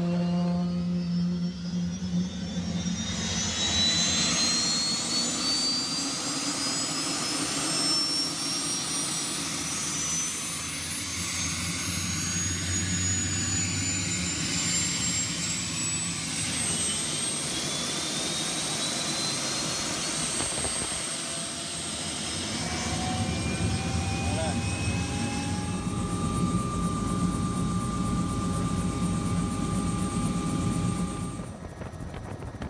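Helicopter turbine engine spooling up during start-up: a whine that rises steadily in pitch over about a quarter of a minute, then settles into a steady whine. A lower tone climbs again near the end and holds steady.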